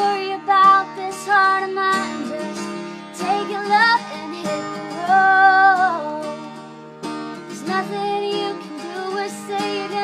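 A song: a singer's voice over acoustic guitar, with a long wavering held note about five seconds in.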